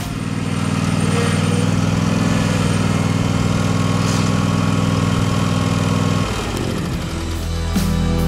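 Engine of a Toro zero-turn riding mower running steadily as it drives. The engine sound drops away about six seconds in and music takes over near the end.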